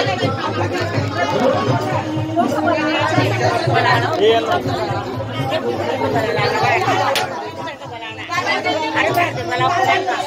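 Several people talking at once, a chatter of overlapping voices.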